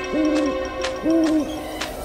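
An owl hooting twice, two rounded hoots of about half a second each, spaced about a second apart, over a faint steady background of sustained tones.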